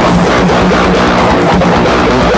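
Low-tuned electric guitar (ESP Viper with EMG pickups, tuned down to A#) played through a Zoom G3 crunch patch, picking a continuous heavy rhythm part over the band's original recording, which is mixed in at a lowered level.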